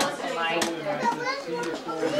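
Overlapping voices of children and adults talking, with a brief sharp click a little over half a second in.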